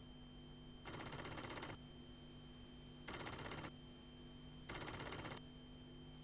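Faint VHS playback noise: a steady low hum and high whine, broken by three short bursts of crackly hiss, each under a second.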